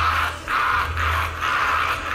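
A cartoon villain's evil laughter, in four drawn-out bursts about two a second, over a low steady hum.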